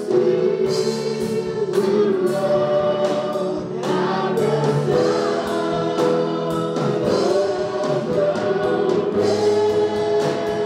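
A small gospel praise-and-worship group singing together in harmony into microphones, backed by a live drum kit and band.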